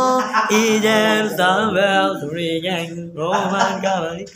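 A man singing loudly, drawing out several long notes that waver and glide in pitch, over a steady low drone.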